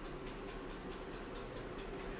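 Faint, quick, even ticking, several ticks a second, over a low steady hum.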